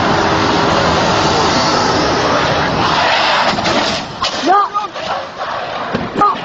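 A loud, steady rushing noise for about four seconds, then men shouting in short, high cries that rise and fall.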